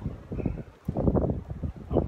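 A man's voice, quiet and indistinct, in short bursts.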